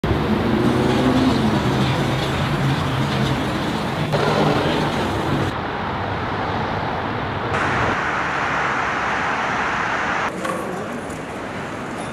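City road traffic noise: passing cars and engines as a steady din, with the sound changing abruptly several times as the footage cuts.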